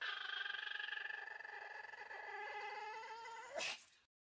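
Pomeranian in a wire pen whining: one long, high, steady whine that slowly fades, then a shorter, louder whine falling in pitch near the end.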